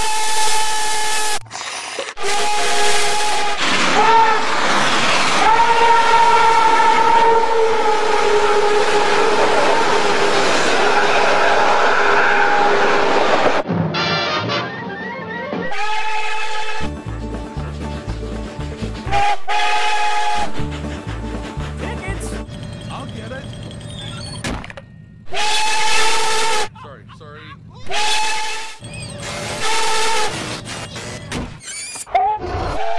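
Nickel Plate Road No. 587's cracked steam locomotive whistle blowing repeatedly: two short blasts, then one long blast of about ten seconds, then several more short blasts. Between the blasts there are stretches of cartoon music and sound effects.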